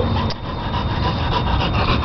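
A dog panting fast, a steady run of short rasping breaths about six a second.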